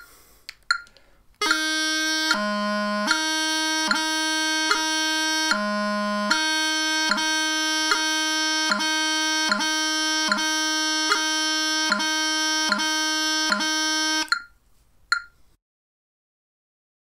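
Bagpipe practice chanter playing a heavy D tapping grace note exercise. A held D is broken every 0.8 s or so by a quick tap down to low G, with two longer lower notes in the first few seconds. It starts about a second and a half in and stops a couple of seconds before the end.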